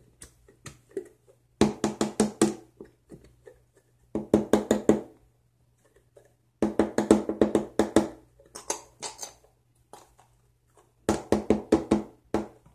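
Plastic squeeze bottle of white glue sputtering as it is squeezed into a measuring cup: air and glue forced through the nozzle in four bursts of rapid, buzzy pulses, about a second each, as the bottle runs nearly empty.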